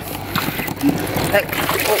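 Live striped catfish (cá sát sọc) thrashing in shallow muddy water: irregular wet splashes and slaps, with a short grunt of a voice about a second in.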